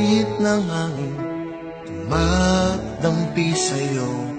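A slow Tagalog love ballad with a male voice singing over soft backing music.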